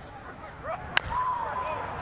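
A single sharp crack of a bat hitting a pitched baseball about halfway through, over faint crowd noise and voices.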